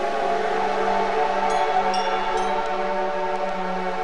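Electronic synth music in a drumless stretch: a sustained synthesizer pad chord over a steady held bass note, with a few faint high ticks.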